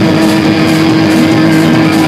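Loud live punk rock band playing: heavily distorted electric guitars hold one steady, droning note over drums.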